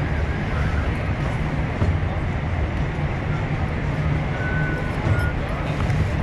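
Busy indoor hall ambience: a steady low rumble under the background chatter of people, with two short high tones a little before the end.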